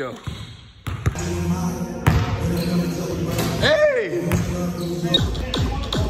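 Basketball bouncing on a gym's hardwood floor, with a few sharp bounces, and one person's voice calling out in a rising and falling cry a little past the middle.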